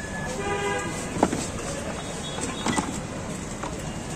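Street traffic noise with a vehicle horn sounding once briefly, about half a second in, and a single sharp click a little after a second in.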